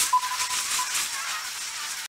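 Crackle and hiss of vinyl record surface noise, dense with small clicks, with a faint high tone coming and going in the first half; it cuts off suddenly at the end.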